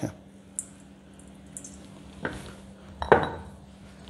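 Metal spoon scraping crushed black pepper out of a stone mortar into a stainless steel bowl, with light scraping followed by a few clinks and knocks of spoon, stone and bowl, the loudest about three seconds in.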